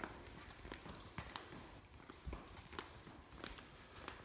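Faint footsteps of a person walking on a hard floor, soft irregular taps.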